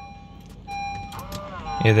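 Honda City's electric folding side-mirror motor whirring as the fold switch on the dashboard is pressed, with a short pitched whine that rises and then holds about a second in; the mirror folds by switch as it should, showing the auto-fold wiring has not upset it.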